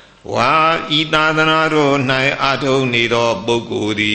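An elderly Buddhist monk's voice reciting Pali scripture in a sing-song chant, with long held syllables.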